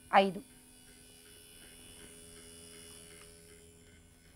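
Faint steady electric hum of the electrically maintained tuning fork that drives the string in Melde's experiment, running throughout after a brief spoken syllable at the start.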